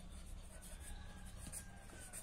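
Felt-tip marker writing on notebook paper, a faint run of short scratching strokes as letters are formed.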